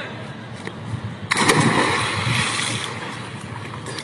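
A person jumping into a swimming pool. A sudden splash hits about a second in, then the churned water fades away over the next couple of seconds.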